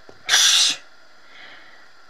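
A single sudden, sharp puff of breath from a person, lasting about half a second and starting a quarter second in.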